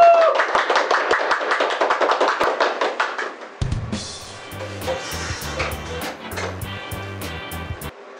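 A small group clapping hands for about three and a half seconds, then background music with a steady drum beat and bass.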